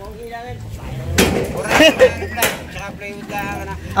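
Indistinct talking, with a few sharp knocks or bangs about a second and two seconds in.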